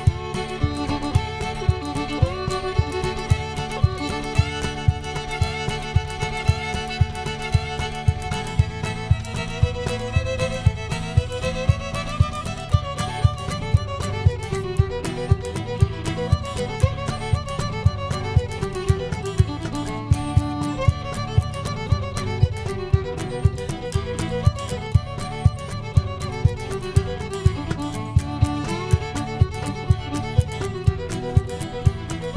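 Live bluegrass instrumental: a fiddle plays the melody over a strummed acoustic guitar, with a cajon keeping a steady beat of about two strokes a second.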